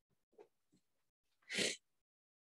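A single short sneeze, about one and a half seconds in.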